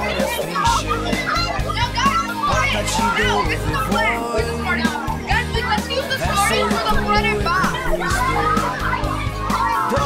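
A room full of children talking and calling out over each other, with music playing underneath and a steady bass beat.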